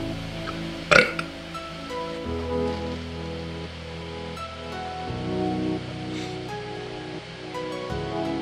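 Background music, its chords changing every few seconds. About a second in comes one short, loud burp.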